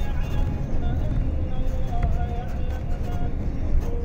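Steady low road rumble of a moving vehicle, heard from inside. Over it a melodic voice holds long notes that step up and down in pitch.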